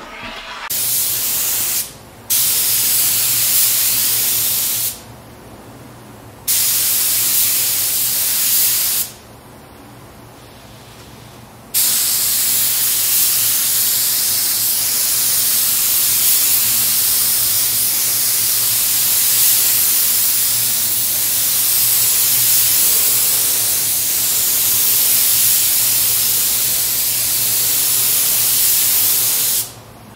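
Husky compressed-air spray gun spraying white vinyl primer onto an oak cabinet door: a loud hiss in three short passes over the first nine seconds, then one long unbroken spray from about twelve seconds in until just before the end. A steady low hum runs underneath throughout.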